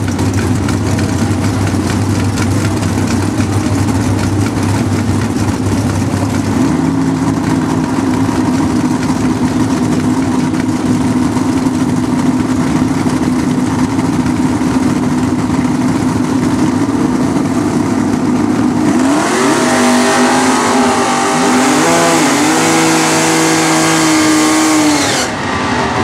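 Two bracket drag-racing cars' engines at the starting line, first idling and then held at a steady higher rpm from about seven seconds in. Near the end both cars launch and accelerate hard, the engine pitch climbing and dropping in steps with each gear shift.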